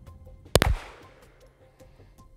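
A single pistol shot about half a second in, a sharp report that dies away quickly, over background music with a steady ticking beat.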